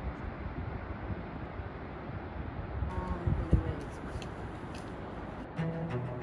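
Steady outdoor rushing noise with a short bump about three and a half seconds in; background music comes in near the end.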